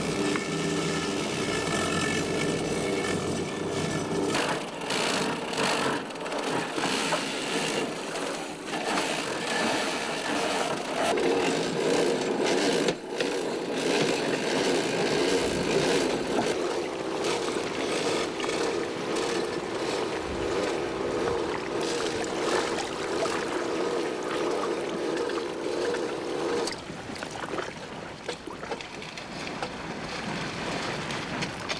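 A fishing boat's winch running steadily as it hauls a line of king crab traps up through an overhead pulley, with knocks and scrapes of rope and gear against the wooden hull. The drone stops about 27 seconds in, as the trap reaches the side of the boat.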